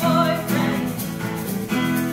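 A woman singing lead over two strummed acoustic guitars.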